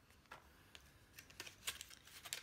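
Faint, irregular small clicks and taps of plastic false-eyelash boxes and trays being handled, about half a dozen, the sharpest near the end.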